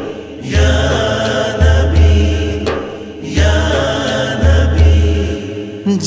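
Musical interlude of a devotional naat: a layered vocal chorus chanting without lyrics over a deep bass pulse that comes about once a second, with short breaks near the start and about halfway through.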